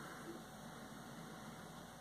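Faint, steady room noise with no distinct sound.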